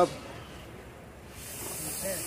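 A steady high hiss comes in about one and a half seconds in, over a low background murmur.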